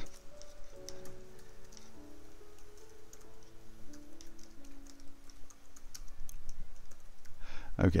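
Computer keyboard being typed on, a steady run of keystrokes as a name is entered into a text field.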